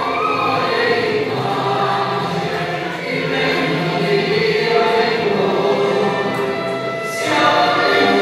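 A choir singing a classical choral piece, played back from a concert DVD and heard through the room's speakers, swelling louder about seven seconds in.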